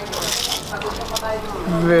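Rustling and crinkling of a Toblerone bar's foil wrapper being handled, over a murmur of background voices; a man's voice starts near the end.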